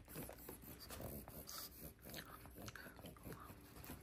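Faint chewing of a soft, chewy air-dried persimmon slice, with a few small clicks.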